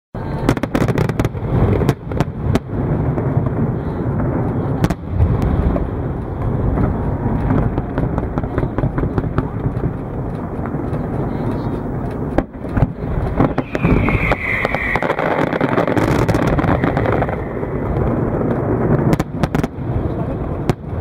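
Aerial fireworks display: a dense, continuous run of shell bursts, with many sharp bangs and crackles.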